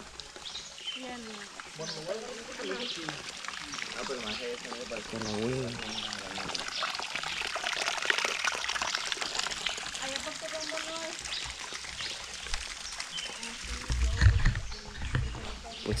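A thin trickle of water running over rocks, louder towards the middle, in a near-dry streambed whose water has been piped away. Other people's voices talk in the background.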